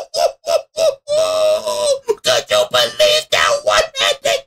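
A man's excited, wordless, high-pitched vocalizing: a run of short rhythmic cries, about four a second, with one longer held cry about a second in.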